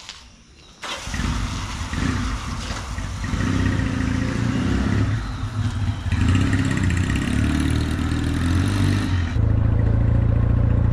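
Small motorcycle engine starting suddenly about a second in, then running with uneven revving as the bike pulls away. Near the end it changes to a steadier, louder engine tone.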